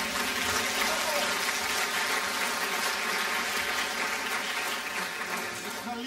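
Theatre audience applauding, a steady spread of clapping that tails off near the end.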